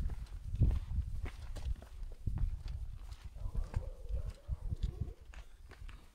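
Footsteps on a dry, sandy dirt trail: an irregular run of steps, each a short scuff with a dull low thump.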